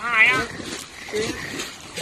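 A short, high, wavering shout from the longboat crew at the very start, then quieter splashing and churning of wooden paddles in the water with faint low voices.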